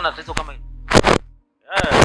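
Music with a deep held bass, sharp cracking beats and a voice over it, cutting off about a second and a half in; a man's voice starts just before the end.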